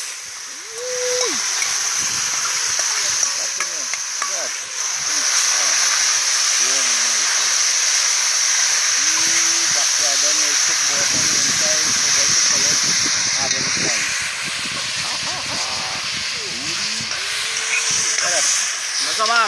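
Seasoned meat sizzling in a pot of hot oil as it is tipped in and stirred with a spoon. The sizzle grows louder about five seconds in.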